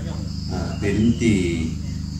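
Insects in the forest making a steady high-pitched drone, under a man's speech through a microphone that carries a low steady hum.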